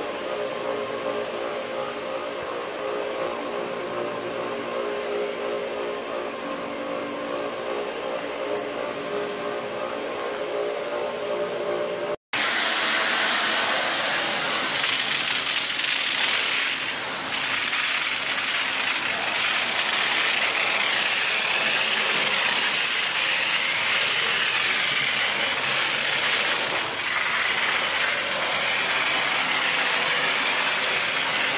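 An electric floor-scrubbing machine runs with a steady motor hum. About twelve seconds in, after a brief cut, a hard-surface spinner tool takes over with a loud, steady hiss of water spray and vacuum suction as it extracts the loosened dirt from vinyl plank flooring.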